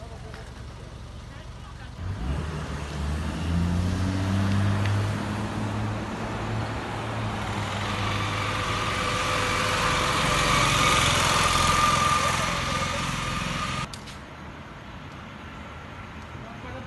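A motor vehicle engine pulling away, its pitch rising over a few seconds, followed by steadily building road and wind noise as it gathers speed. The noise cuts off suddenly about two seconds before the end.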